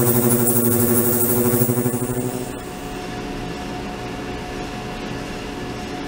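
An ultrasonic tank running, giving a steady multi-tone hum. About two and a half seconds in, the hum drops in level and carries on more quietly.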